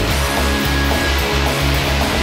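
Loud rock soundtrack music with guitar.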